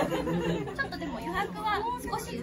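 Chatter: several people talking at once in conversational voices.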